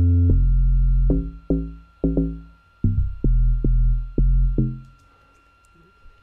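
Amapiano log drum bass line playing from FL Studio: deep, pitched, percussive notes in a syncopated rhythm, each dying away quickly. The pattern stops about five seconds in.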